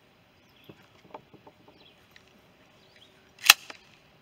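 A Remington 870 pump shotgun being handled: faint clicks and knocks as it is picked up, then one sharp, loud click about three and a half seconds in with a lighter one right after.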